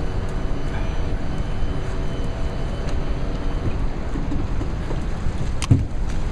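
Steady low rumble of a boat's motor running on a fast river, mixed with wind on the microphone. A single sharp knock comes near the end.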